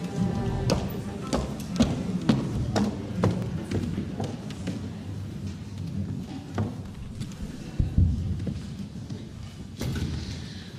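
Low, quiet sounds from the string instruments with scattered knocks and taps, typical of an orchestra settling on stage before playing. The sound is fuller for the first few seconds and quieter after.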